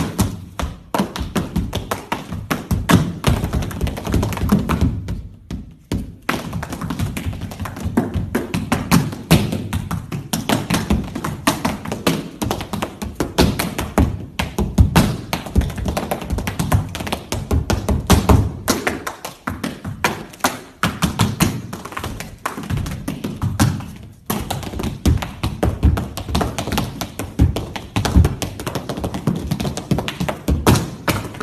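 Tap shoes striking a wooden floor in fast rhythmic runs of taps, heel drops and stamps, broken by a few short pauses.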